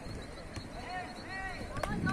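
Players shouting to one another across a football pitch, with a single sharp knock of a football being kicked near the end.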